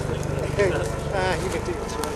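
A man laughing briefly, over a steady low rumble.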